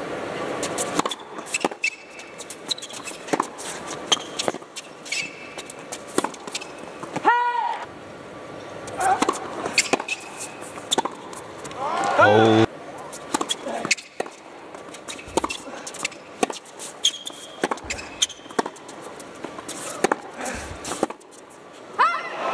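Tennis rallies on an indoor hard court: sharp repeated racket strikes and ball bounces, with short high squeaks of shoes on the court surface. Two brief shouts cut through, one about a third of the way in and one a little past halfway.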